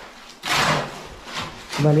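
Steel shovel scraping through wet concrete mix and across a concrete floor as it is mixed by hand: one long scrape starting about half a second in, then shorter scrapes. A man starts speaking at the very end.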